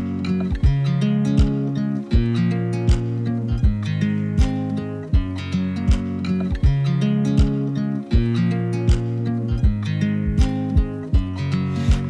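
Background music: the instrumental break of a pop song, with acoustic guitar strumming over a steady beat and no singing.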